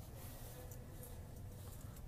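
Faint ice-rink ambience: a low steady hum with faint distant noise from the rink.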